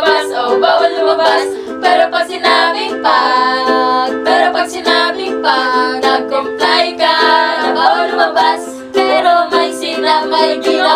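A ukulele strummed in steady chords while several young women sing along together.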